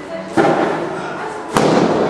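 Two loud, sharp bangs a little over a second apart, each ringing out with echo in a large hall.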